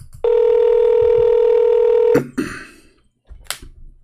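Ringback tone of an outgoing phone call: one steady tone lasting about two seconds, then cutting off.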